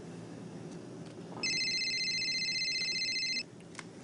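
Mobile phone ringing: a high electronic trilling ringtone of several pulsed tones, lasting about two seconds from about a second and a half in, followed by a faint click.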